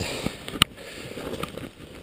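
Mountain bike rolling over fresh snow: tyre crunch and bike rattle as an even noise with small irregular ticks, and one sharp knock about half a second in.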